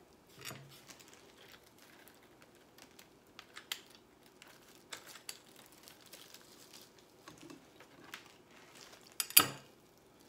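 Faint scattered clicks and rustles of a hot glue gun being worked against a straw bunny figure set in an artificial-flower arrangement, as a glue joint that came loose is re-glued. A short, louder noise comes about nine seconds in.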